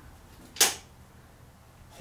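A single short, sharp noise a little over half a second in, over faint room tone.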